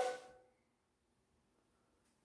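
Near silence, after the last spoken word fades out at the very start.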